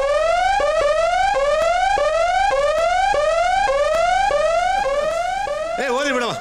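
Electronic alarm sound effect: a tone sweeping upward and dropping back sharply, repeated about twice a second, like a whooping alarm.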